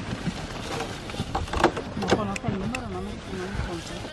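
Several sharp clicks and snips of a hand-held apple-picking clipper cutting Honeycrisp stems among the leaves, loudest and closest together in the middle. Men's voices talk and laugh in the background.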